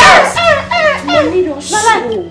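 Several women's high-pitched excited voices, squealing and laughing in short bursts, with no clear words.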